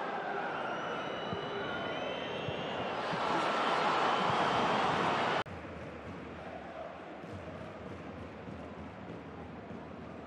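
Football stadium crowd noise swelling into a loud roar during an attack near the goal, then cut off abruptly about five and a half seconds in and replaced by a quieter, steady stadium murmur.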